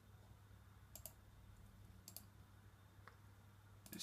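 Near silence with a few faint computer mouse clicks, about a second apart, over quiet room tone.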